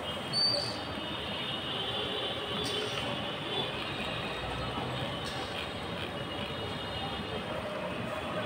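Steady outdoor city ambience under a darkening sky: a continuous even rushing noise with no clear single source. A short high chirp sounds about half a second in.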